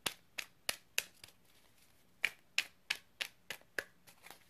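A deck of tarot cards being shuffled by hand: a run of sharp card snaps, about three a second, with a pause of about a second near the middle.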